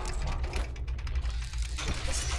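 Sound design for an animated logo: rapid mechanical clicking and ratcheting over a steady low bass hum, with a swell of noise near the end.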